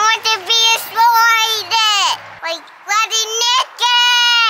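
A young child's voice singing or vocalising wordless, high held notes in a string of short phrases. Several notes end by sliding down, and there is a brief pause a little past halfway.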